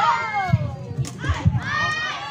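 Several high-pitched female voices shouting and cheering over one another, rising and falling in pitch, with a few low thuds.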